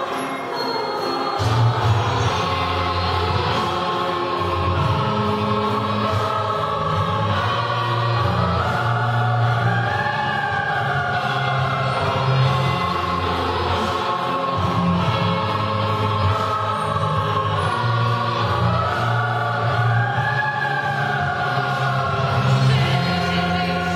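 Children's choir singing in several parts, with a low part holding long notes beneath the upper voices from about a second in.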